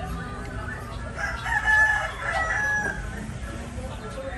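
A rooster crowing once, starting about a second in and lasting nearly two seconds.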